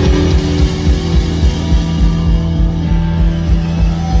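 Amplified live rock band playing: electric guitars over bass and a steady drum beat, loud.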